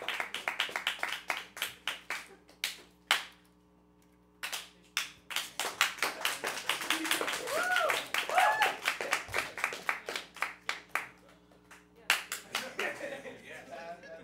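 A small audience clapping, dying away briefly about three seconds in and then picking up again, with a couple of short whoops in the middle.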